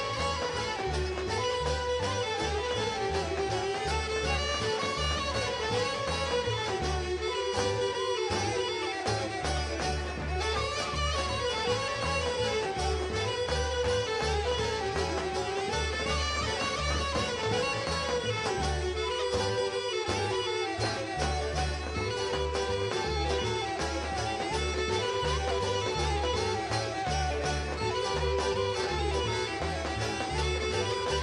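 Background traditional folk music with a steady low beat and a wavering, ornamented melody line.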